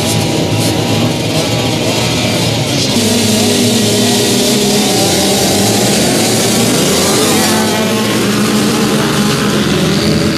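A field of small junior motocross bikes running together on the start line. About three seconds in they all get louder and rise in pitch as the riders launch off the start and accelerate away.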